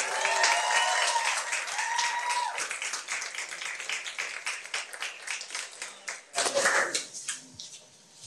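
Audience applauding in a small meeting room, the clapping dying away over about six seconds. Voices sound over the clapping in the first couple of seconds, and a few words are spoken near the end.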